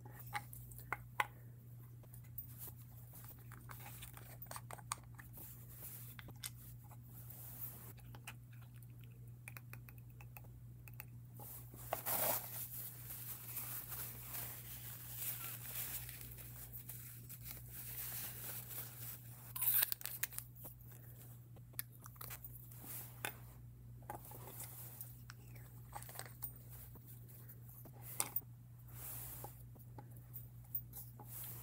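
Small handling noises of a fountain pen being taken apart and its nib wiped in a paper tissue: light clicks and taps with bursts of tissue crinkling, the loudest about twelve and twenty seconds in, over a low steady hum.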